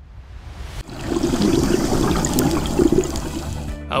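Quiet background music, then from about a second in a grainy rush of bubbling, gurgling water over it that lasts until near the end.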